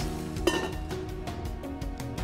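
Stainless-steel lid set down on a stainless-steel wok with a single metallic clink about half a second in, over background music with a steady beat.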